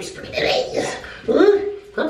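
A woman's voice making two drawn-out, whiny non-word vocal sounds; the second rises and is then held about halfway through.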